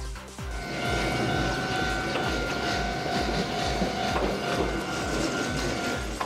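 Konan Railway electric train running along the track: a steady rumble of wheels on rail with a steady high whine that fades out near the end.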